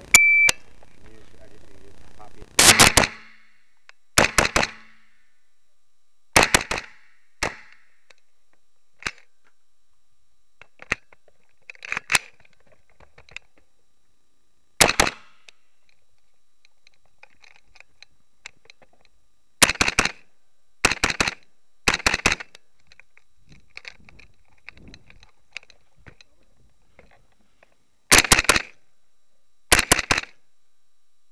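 A shot timer beeps once, then an AR-15-style carbine is fired in loud, sharp singles, pairs and short strings, with pauses of several seconds between groups.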